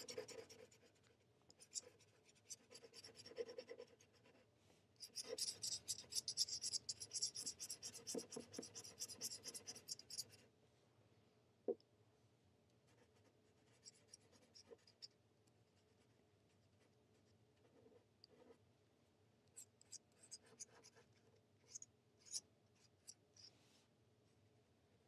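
Metal dip-pen nib scratching over a paper swatch card as ink is stroked on. There are a few short bursts at first, then about five seconds of steady scratching, then only faint scattered scratches and ticks.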